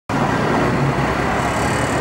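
Steady road traffic noise with no sudden events.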